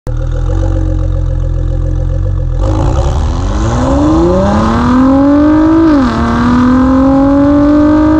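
2017 Ford GT's twin-turbo 3.5-litre V6 running with a steady low note, then accelerating from about three seconds in. Its pitch climbs steadily, drops once with an upshift about six seconds in, and climbs again.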